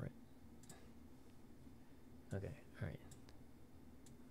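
Quiet computer mouse clicks: a quick double-click about half a second in, then a couple more clicks just after three seconds. A brief low murmur of voice comes between them.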